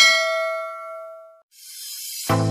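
A bell-like notification 'ding' sound effect, struck as the bell icon is clicked, ringing out and fading over about a second and a half. Then a hissing whoosh that swells near the end.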